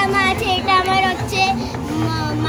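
A song with a high singing voice over music.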